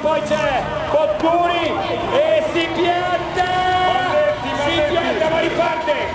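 Men's voices talking over crowd chatter, one voice after another with no pause.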